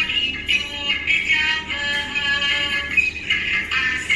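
Recorded song playing, a high sung melody over accompaniment.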